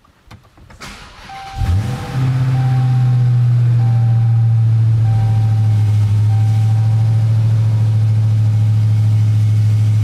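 Supercharged 6.2-litre HEMI V8 of a 2021 Dodge Charger Hellcat cold-starting: it catches and flares up about a second and a half in, then settles into a steady idle. It sounds a little raspy, which the owner puts down to the pre-production car having no tailpipes.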